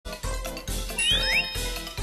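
Light, bouncy children's background music with jingling, chiming tones over a steady beat, and two quick rising whistle-like sound effects about a second in.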